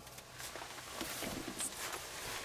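Faint rustling of a nylon jacket and hair as arms are raised to tie the hair back.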